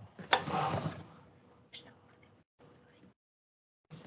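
Desk handling noise through a video-call microphone: a sharp click about a third of a second in, then a short rustle and a few faint clicks. The sound cuts out between them as the call's noise gate closes.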